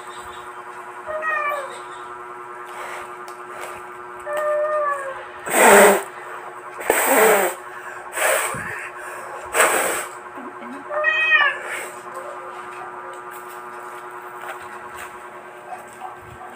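A domestic cat meowing three times, each call bending in pitch. Between the second and third meow come four loud, short noisy bursts, over a faint steady hum.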